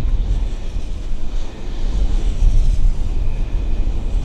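Strong wind buffeting the microphone: a heavy, uneven low rumble with a hiss of wind above it.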